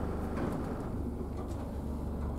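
Steady low hum and rumble of a Southern Class 313 electric multiple unit, heard from inside the carriage, with a few faint clicks about half a second in.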